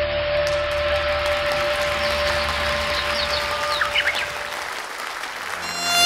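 Audience applause over the last held note of the dance music, which fades out, with a few short whistles about four seconds in. New music starts right at the end.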